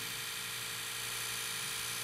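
A steady electrical hum with a faint high whine underneath, unchanging and with no other sound.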